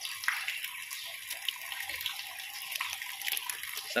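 Water running steadily, an even rushing hiss like a pipe or tap pouring into a shallow concrete pond, with a few faint small ticks or splashes.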